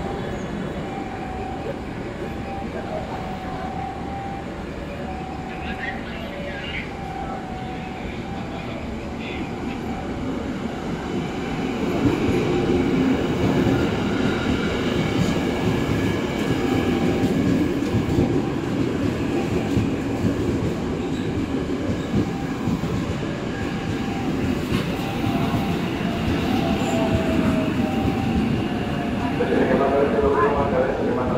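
Electric commuter train (KRL) running along the station platform, a steady rumble of wheels on rails that grows louder about twelve seconds in as the cars pass close by.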